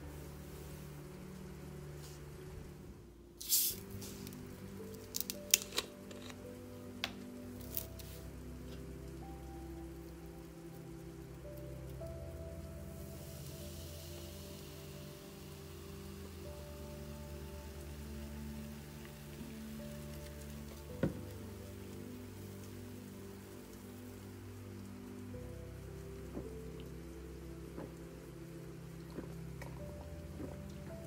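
Sparkling water poured from a plastic bottle into a plastic cup, fizzing steadily for about ten seconds, over soft background music. A few sharp clicks and knocks come earlier as the bottle is handled and opened.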